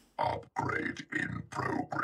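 A person's voice on the TV episode's soundtrack in a run of short, broken, wordless bursts, about half a dozen in under two seconds.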